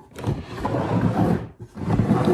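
Old wooden crate being dragged and scraped onto a table, in two long scraping stretches with a short break about one and a half seconds in.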